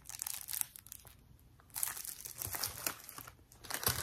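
Plastic-wrapped rolls of glittery sparkle mesh crinkling as they are handled, in several bursts with a quieter pause between one and two seconds in.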